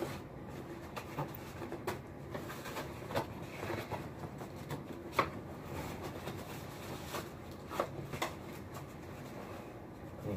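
Packaging being handled while a new laptop box is opened: soft rustling with scattered light taps and clicks, the sharpest about five seconds in.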